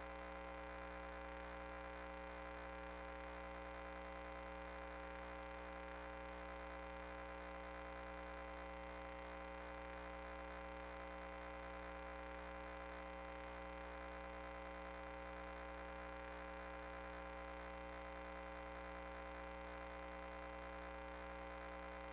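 Faint, steady electrical hum with many overtones, unchanging throughout.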